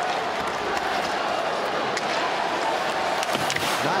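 Steady crowd noise filling an ice hockey arena during play, with a few faint sharp clicks near the end.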